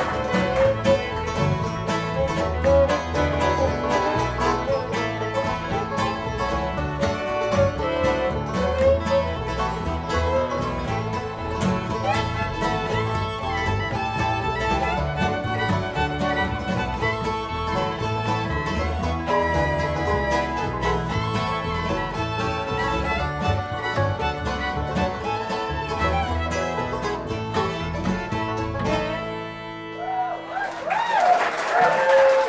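Live bluegrass band playing an instrumental tune on fiddle, mandolin, acoustic guitar, banjo and upright bass, the bowed fiddle melody over plucked strings and a walking bass; the tune ends just before the close.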